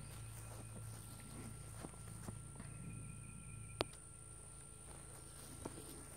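Quiet outdoor background with a steady high whine and a few faint clicks, with one sharper tick about four seconds in.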